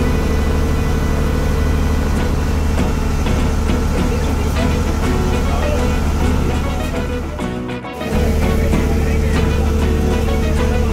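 Steady low drone of a harbour ferry's engine heard from on board, with wind and water noise over it. About seven and a half seconds in, the drone dips briefly under a snatch of music, then resumes.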